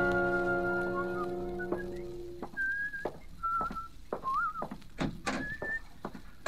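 A brass-led orchestral music bridge holds a chord and fades out over the first couple of seconds. Then someone whistles a few short notes, one with a little rising wiggle, over irregular footstep-like knocks: a radio-drama sound effect of someone arriving home.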